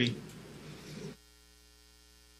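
Faint room noise that cuts off suddenly about a second in, leaving near silence with a faint steady electrical mains hum.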